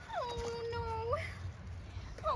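A high, whining animal call that slides down in pitch, holds steady for most of a second, then turns up at the end.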